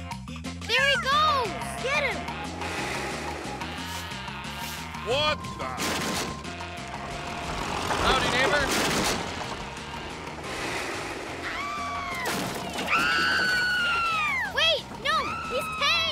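Cartoon soundtrack: background music with a repeating bass line under wordless yelps and cries. A loud crash about eight seconds in, as a ride-on mower hits a house.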